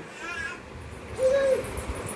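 A person's voice making one short hooting call a little over a second in, after a faint brief vocal sound near the start.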